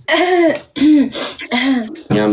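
A person's voice making short non-word vocal sounds, about four bursts in quick succession.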